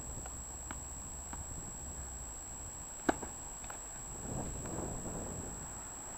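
A tennis ball bounced a few times on a hard court with light taps, then one sharp crack of the racket striking the ball on a serve about three seconds in. The serve is an ace.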